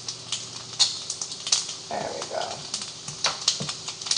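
Turkey bacon frying in a nonstick pan: irregular crackles and pops of sizzling fat. The bacon is nearly done.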